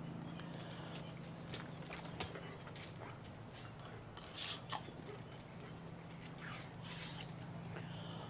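A dog's claws clicking and scuffing on a hard patio floor as it moves about: a few faint clicks and a short scrape. A steady low hum runs underneath.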